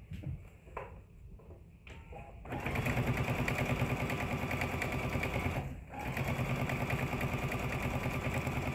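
Electric sewing machine stitching a quarter-inch seam. It starts about a third of the way in and runs fast and steady with a rapid, even needle rhythm, stopping for a moment about two-thirds through before running on. Before it starts there are only a few faint fabric-handling clicks.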